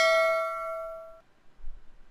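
A single bell-like ding, struck once and ringing out with several overtones that fade away over about a second and a half.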